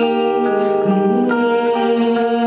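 Acoustic guitar playing live, with a woman singing held notes over it.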